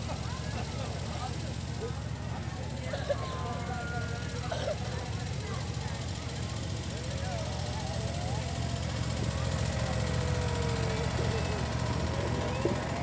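Ride-on miniature train's locomotive running along the track with a steady low drone, a little louder near the end as the locomotive comes closer. Crowd chatter and children's voices carry over it.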